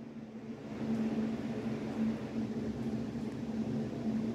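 A steady low mechanical hum with a faint hiss.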